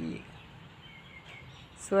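Quiet outdoor background with a faint single bird chirp about a second in.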